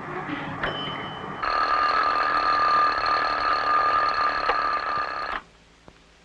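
Bedside alarm clock ringing steadily for about four seconds, then cut off suddenly as a hand silences it.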